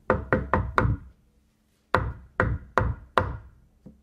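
Knocking on wood, acted out as a fist pounding on a door: four quick knocks, a pause of about a second, then four more, slightly slower.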